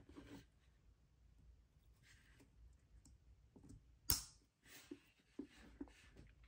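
Quiet handling of plastic lever-type wire connectors and multimeter test leads: a few light clicks and rustles, with one sharp click about four seconds in and some smaller ticks near the end.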